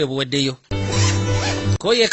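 A suitcase zipper pulled in one run of about a second, over steady background music, with a voice speaking before and after it.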